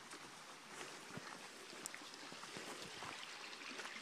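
Faint steady rush of a shallow creek running over rocks, with a few light ticks of footsteps on the trail.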